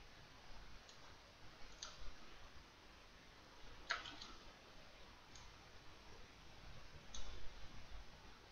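Faint clicks of a computer mouse: about five sparse clicks, one a quick cluster of two or three near the middle, over a low background hum.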